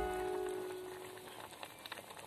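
Background music fading out, leaving the faint crackling patter of fish curry boiling in a clay pot.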